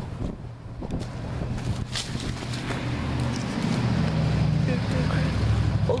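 A car approaching on the street, its engine and tyre rumble growing louder over the last few seconds.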